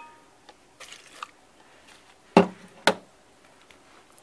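A small amount of water trickles into a plastic blender jar while the blender is off. A bit later come two sharp knocks of plastic, about half a second apart.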